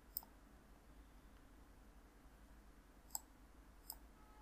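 Three computer mouse clicks over near silence: one just after the start, then two near the end less than a second apart.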